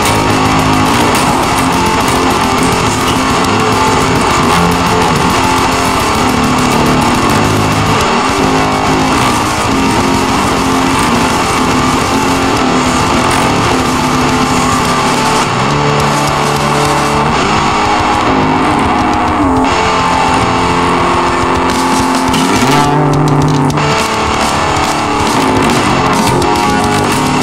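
Hard rock music led by electric guitar, loud and steady, with no vocals in this instrumental stretch.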